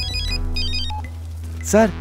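Mobile phone ringtone: a quick electronic melody of high alternating beeps that stops about a second in, over a low, steady background music drone.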